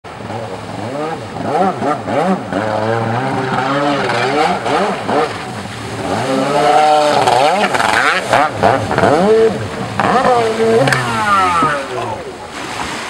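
Ported Yamaha 701 two-stroke twin of a stand-up jet ski, revved up and down in quick throttle blips as the ski carves and spins on the water. A sharp rise in revs comes near the end.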